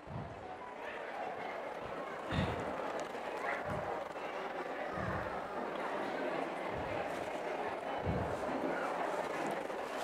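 Indistinct background chatter of people, steady and fairly quiet, with a few dull low thumps scattered through it.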